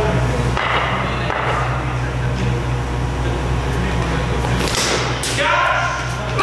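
Cricket bat striking a taped tennis ball with a sharp crack near the end, followed at once by men shouting, over a steady low hum in a large hall.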